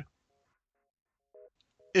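Near silence with a few faint, short electronic beeps; the clearest two come about a second and a half in and just before the end.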